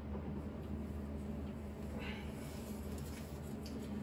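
Steady low hum, with faint soft handling noise about two seconds in as a sheet-metal electrical panel cover is picked up and lined up against its box.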